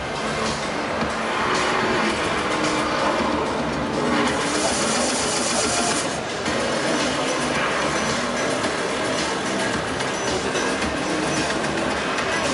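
Promotional-film soundtrack played over exhibition-hall loudspeakers: music mixed with car engine and driving sound effects. A hissing rush comes in about four seconds in and lasts about two seconds.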